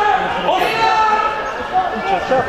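Voices shouting during a live football match, with a sharp thud of a ball being kicked about half a second in.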